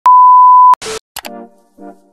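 A loud, steady 1 kHz test-pattern bleep, the tone that goes with colour bars, cuts off abruptly after about three-quarters of a second. A brief burst of static-like hiss and a couple of clicks follow, then music starts with a voice going "yeah".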